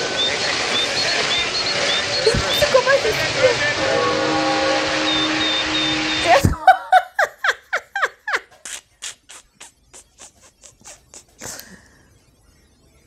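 A loud, dense din of exaggerated household noise from the comedy sketch, with scattered chirping tones, runs for about six and a half seconds and cuts off suddenly. A woman then laughs in a quick run of short bursts that fade away near the end.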